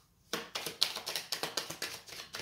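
A deck of tarot cards being shuffled by hand: a quick, dense run of crisp card clicks that starts about a third of a second in.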